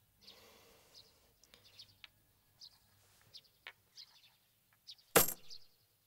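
Faint, scattered bird chirps as background ambience, then a single sharp, loud impact with a short ringing tail about five seconds in.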